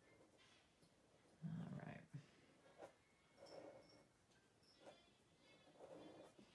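Near silence: a fine-tip felt marker drawing on paper, with a few faint ticks and small squeaks. One short spoken word comes about a second and a half in.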